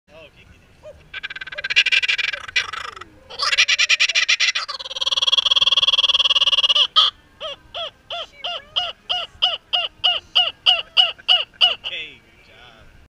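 Laughing kookaburra giving its full laughing call: a few soft chuckles building into loud, raucous cackling, a held ringing note, then a long run of evenly spaced 'ha' notes, about three a second.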